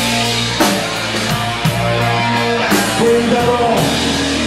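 Live blues-rock band playing, with drum kit and bass guitar, steady and loud.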